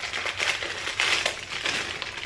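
Plastic wrapper of a Tim Tam biscuit packet crinkling as it is opened and the plastic tray of biscuits is pulled out, a continuous crackle of many small clicks.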